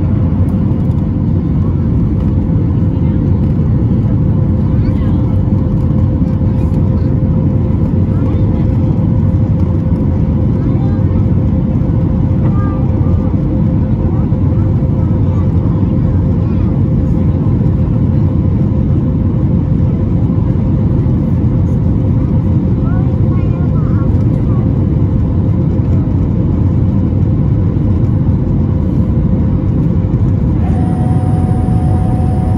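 Loud, steady cabin noise of a Boeing 737 MAX 8 climbing after takeoff: the CFM LEAP-1B engines and airflow, heard from a window seat over the wing, with a steady hum tone over the rumble.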